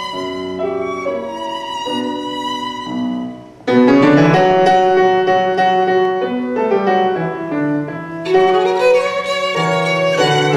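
Violin and Bösendorfer grand piano playing together. About three and a half seconds in the music drops briefly, then comes back louder and fuller, with another short dip about eight seconds in.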